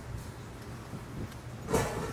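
Long-handled garden tool scraping and raking over loose soil, faint, with a brief louder scrape near the end.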